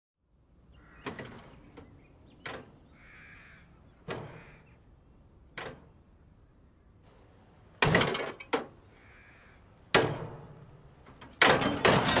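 A string of sharp metallic bangs and clangs, as of scrap car bodywork being struck. They come about every second and a half at first, then louder from about eight seconds in, and crowd together near the end. A few faint bird calls come in between.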